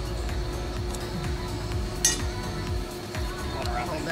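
Background music with one sharp metallic clink about halfway through, the loudest sound here.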